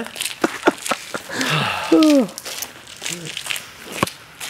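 A man's voice making sounds without words: a breathy exhale, then a loud falling 'oh' about two seconds in, among scattered small clicks and crinkles.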